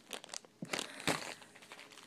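Packing material in a shipping box crinkling and rustling in irregular crackles as hands dig through it.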